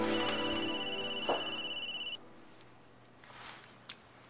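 A mobile phone ringing with a high, steady electronic ring that cuts off suddenly about two seconds in as the call is answered. Soft background music fades out under the ring in the first second.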